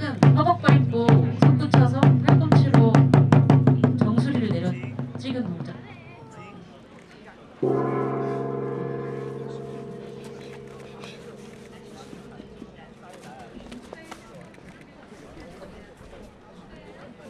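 Korean traditional percussion: a large gong (jing) and drums struck in a fast roll that speeds up and then fades away. About seven and a half seconds in, a single gong stroke rings out, low and humming, and dies away slowly.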